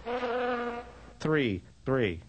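A buzzing, wavering hummed note lasting under a second. About a second in, a voice says "three" with a steeply falling pitch.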